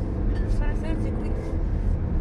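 Steady low road and engine rumble inside the cabin of a car driving at highway speed.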